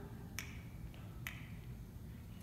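Dancers snapping their fingers together, two sharp snaps a little under a second apart.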